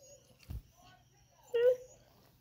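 A puppy gives one short, pitched whine-like vocalisation about one and a half seconds in, part of her 'talking'. It is preceded by a soft low thump.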